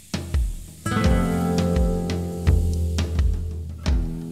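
Instrumental intro of a Romani-style song: a drum kit beat keeps steady time, and about a second in guitar chords come in and ring on over it.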